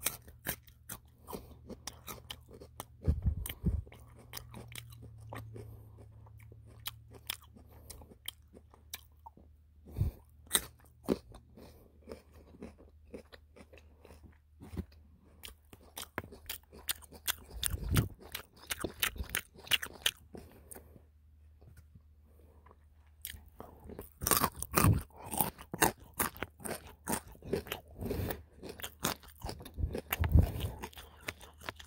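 Raw baby carrots bitten and chewed close to the microphone: sharp crisp crunches with spells of wetter chewing between them, a quieter pause a little after two-thirds of the way through, and a run of loud crunches near the end.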